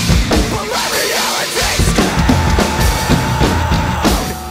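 Acoustic drum kit played hard along to a recorded metalcore track, with fast drum hits over distorted heavy-metal music.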